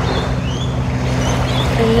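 Wind noise on the microphone over a steady low drone, with a few faint high chirps, likely small birds.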